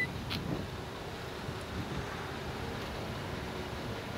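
Power liftgate of a 2018 Jeep Grand Cherokee lowering under its electric motor: a faint, steady motor hum, with a short tick just after the start.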